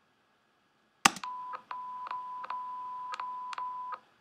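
A steady, even-pitched electronic test-tone beep from an audio sync test video, starting about a second in after a loud click. The beeps are joined back to back into one tone, which is broken by a string of short sharp clicks.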